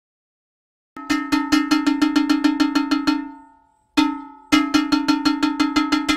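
Igbo iron gong (ogene) beaten rapidly with a wooden stick, about eight ringing strokes a second: one run of about two seconds, a single stroke, then a second run. It is a town crier's gong calling people to hear an announcement.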